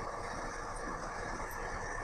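Steady low background hiss and hum, room tone, with no distinct event.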